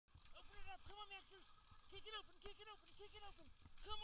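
Siberian husky giving short, high, rising-and-falling yips and whines in quick irregular clusters while running in harness.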